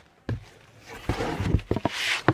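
Handling noise from a cardboard shipping box and its contents: a dull bump shortly after the start, then rustling from about halfway with a quick run of sharp knocks near the end.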